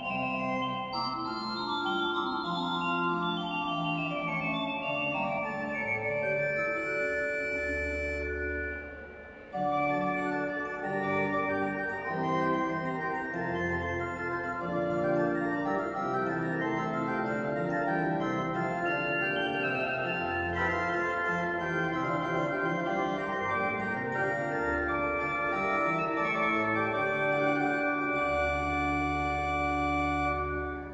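Pipe organ playing held chords, with deep pedal bass notes coming in now and then. About eight seconds in the sound dies away briefly, then the playing starts again.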